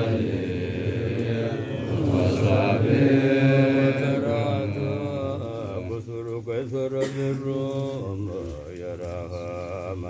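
Men's voices chanting an Arabic menzuma blessing on the Prophet Muhammad, in long held notes layered over a steady low hum of voices. The chant grows softer and more wavering in the second half.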